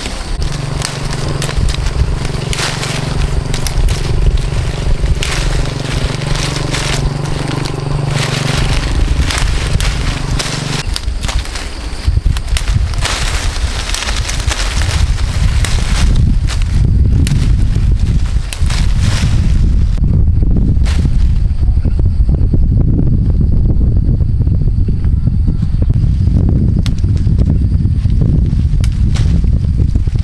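A small engine running with a steady hum and crackling for about the first ten seconds, then a loud, continuous low rumble.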